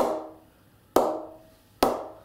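Readers Sovereign leather cricket ball bounced on the face of a new grade 1 English willow BAS Bow 20/20 cricket bat: three sharp pings about a second apart, each ringing briefly. The bright ping is the sign of a responsive blade with good rebound, straight out of the packet.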